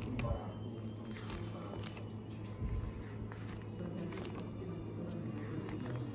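Plastic-sleeved menu pages being handled and turned, giving several short crackles and rustles over a steady low hum.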